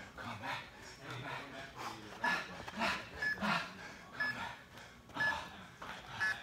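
Heavy, rapid panting from a person exerting himself in a high-intensity cardio interval, about two breaths a second. From a little past two seconds in, an interval timer beeps once a second, counting down the last seconds of the work period.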